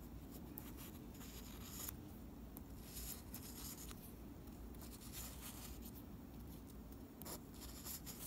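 Fingertips rubbing and scratching on a small countersunk screw close to the microphone, in irregular scratchy strokes a second or so apart, over a low steady hum.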